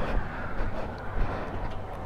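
Sportbike engine idling steadily, with a low wind rush on the microphone.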